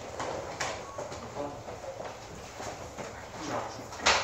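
Room noise as a press conference breaks up: scattered knocks and clatter of people moving and handling things, with faint voices murmuring in the background.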